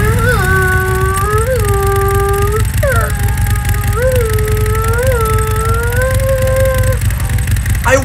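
Race-car engine noise: a steady droning tone that rises briefly in pitch about once a second over a low rumble, stopping about a second before the end.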